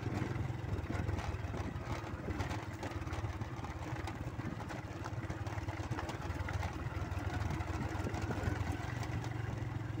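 Motorcycle engine running steadily while riding, with wind and road noise on the microphone.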